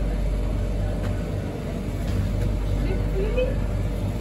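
Steady low electrical hum in a shop, with faint indistinct voices in the background.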